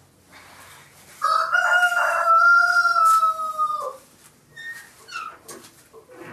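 A rooster crowing once, a long call held for nearly three seconds that drops in pitch at its end, followed by a few short, quieter sounds.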